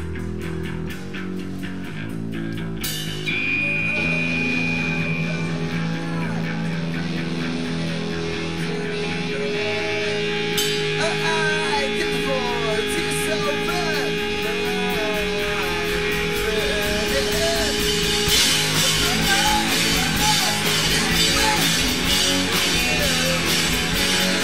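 Rock band playing live: electric guitars, bass and drums, with a long held guitar note and winding lead lines over a steady beat. The band gets louder and denser, heavier on the cymbals, about three-quarters of the way through.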